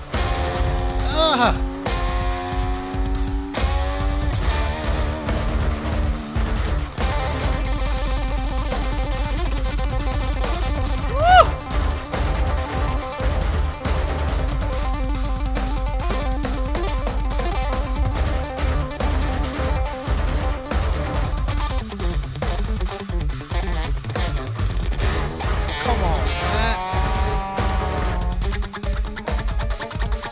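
Instrumental band music: a drum kit played with fast, dense strokes under electric bass guitar and keyboards, with a single louder accent a little before the middle.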